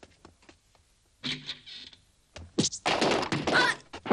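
Sound-effect track: light footsteps on a wooden floor, then a dull knock about a second in. In the last second comes a loud burst of crashing and crackling as a door and wall are blasted apart.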